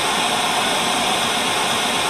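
Analog television static: a steady, loud hiss of white noise, the sound of a set receiving no signal.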